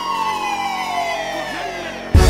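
A siren sample in a trap track's break: a single wailing tone gliding slowly downward, with no beat under it.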